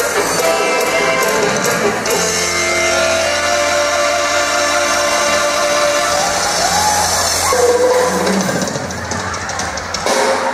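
Live dance band playing through the stage sound system, with drums and guitar in the mix, heard from out on the dance floor.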